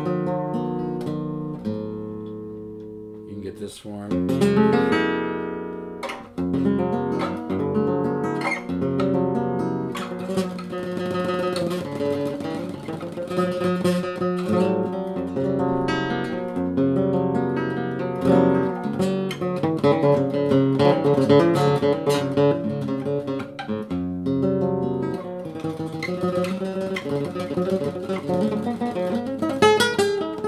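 Solid-wood nylon-string classical guitar played solo in an altered flamenco tuning (low to high D A D F# B E). A chord rings and fades over the first few seconds, then a loud strummed chord about four seconds in opens steady playing of chords and short picked lines.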